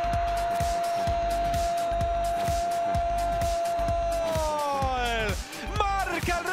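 A Spanish football commentator's long goal shout, a drawn-out "¡gol!" held on one pitch for about four seconds and then falling away. Background music with a steady beat plays under it.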